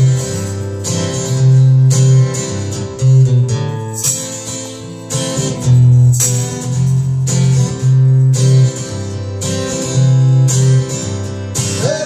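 Acoustic guitar strummed through an instrumental passage with no singing, over strong low bass notes that come and go every second or so.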